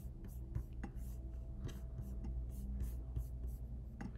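Computer mouse clicking and sliding on a desk, faint scattered clicks and rubbing over a low steady hum.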